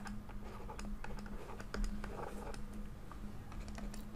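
Faint, irregular clicks and taps of a stylus on a pen tablet while handwriting figures, over a low steady hum.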